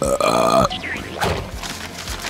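A loud burp lasting about two-thirds of a second, let out right after gulping fizzy cola.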